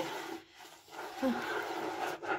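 Soapy kitchen sponge rubbing over the wet surface of a speckled composite sink: soft scrubbing noise that drops away briefly about half a second in and picks up again about a second in.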